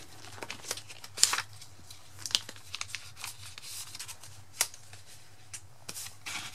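Plastic photocard binder sleeves crinkling and rustling as pages are turned and cards are handled, with irregular sharp snaps, the loudest about a second in and again past the middle. A faint steady low hum runs underneath.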